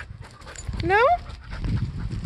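Footsteps scuffing and rustling over leaf-strewn ground with scattered light clicks, growing louder from about half a second in, as a person and a leashed dog walk off. A short rising spoken 'No?' falls over it about a second in.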